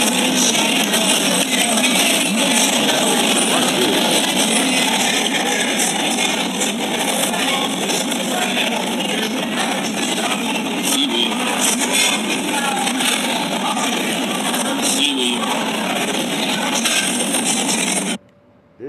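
Loud, busy restaurant din, a dense mix of voices and clatter with background music, cutting off abruptly at the end.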